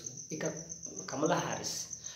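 A man speaking Telugu, with a short pause at the start. Behind his voice runs a constant thin, high-pitched tone that pulses rapidly and evenly.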